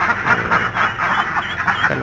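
A flock of Alabio laying ducks keeping up a steady, dense quacking chatter, with a few higher short calls through the middle.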